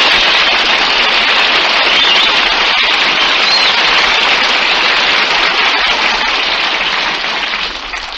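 Studio audience applauding steadily, heard on an old radio broadcast recording, easing off slightly near the end.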